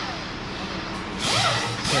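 A wire wheel scrubbing rust off a steel trailer fender, in two loud bursts: one just past a second in and one near the end, the pitch falling as each burst eases off.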